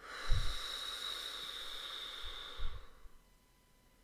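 A woman's long breath out, lasting about three seconds, with a soft low puff at its start and another near its end.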